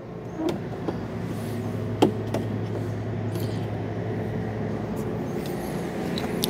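A small hinged plastic access hatch on an RV's side wall being shut, with a few sharp clicks in the first couple of seconds, the loudest about two seconds in. Under it runs a steady low mechanical hum that swells in during the first second and holds.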